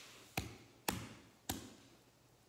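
Three sharp knocks on a hard tabletop, about half a second apart, each with a short ringing tail.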